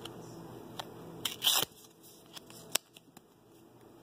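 A thin cardstock code card being torn apart by hand: a short rip about a second and a half in, with a few small clicks and crackles of the card around it.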